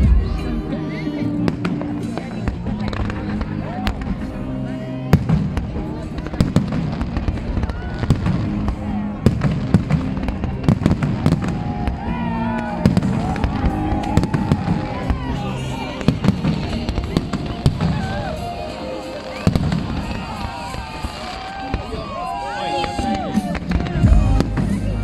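Fireworks display: aerial shells bang and crackle repeatedly throughout, with crowd voices and music underneath.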